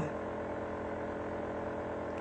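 Steady low hum of room background noise, with no distinct events.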